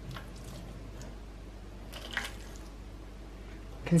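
Boiling water poured in a thin stream onto soda crystals in a metal oven tray, a faint, steady trickle with a slightly louder splash about two seconds in, wetting the crystals into a paste to loosen burnt-on marks.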